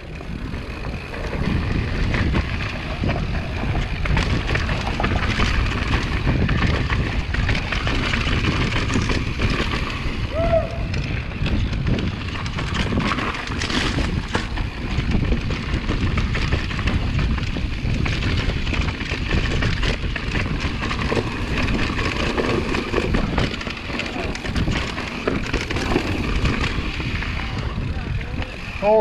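Mountain bike descending a rough dirt singletrack: continuous tyre noise over dirt and rocks with the bike rattling and clattering, and wind buffeting the microphone.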